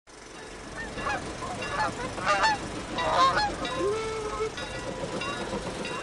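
Geese honking: a run of overlapping calls that is busiest in the first half, then one longer, lower call about four seconds in.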